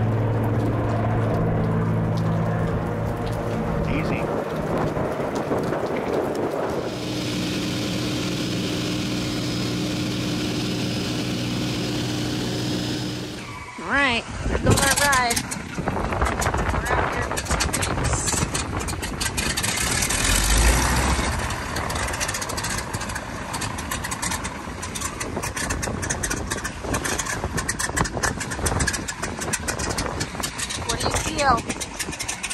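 A floatplane's propeller engine drones steadily as it flies low over the water. After an abrupt cut about halfway through, wind buffets the microphone on a beach, with crackling handling noise and brief voices.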